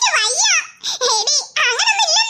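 High-pitched cartoon girls' voices giggling and laughing in several short, rising-and-falling peals.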